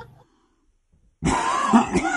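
A man clearing his throat with a rough cough. It starts a little over a second in, after a short silence.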